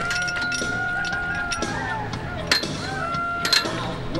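A woman's long, steady scream during a bungee jump's free fall, held at one pitch for about a second and a half, followed by a shorter scream about three seconds in, with a couple of sharp clicks.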